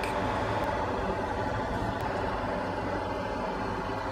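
Steady low hum and hiss of workbench equipment running, with no distinct clicks or knocks; the soldering iron and desoldering wick work quietly.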